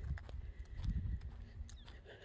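Footsteps on a dirt path, a few soft irregular steps over a low rumble.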